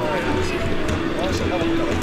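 Several voices talking at once, with the occasional thud of a football being kicked.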